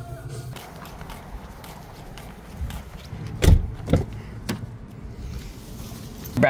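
Background music that stops about half a second in, then steady outdoor background noise with three sharp thuds around the middle, the first the loudest.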